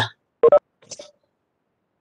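Mostly dead silence on a video-call audio line. About half a second in, a brief clipped voice sound breaks it, and a fainter one follows just after.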